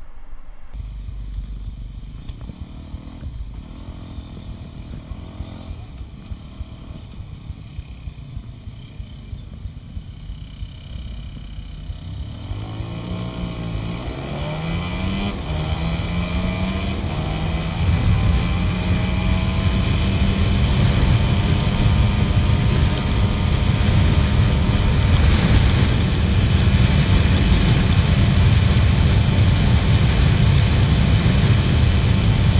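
Honda Biz's small single-cylinder four-stroke engine heard from the rider's seat. It is low and quiet while rolling slowly in traffic, then about twelve seconds in its note rises as it accelerates. It settles into a steady cruise, with wind rushing on the microphone growing louder.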